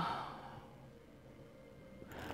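A woman's soft exhale right after a spoken "uh", fading within about half a second, then quiet room tone.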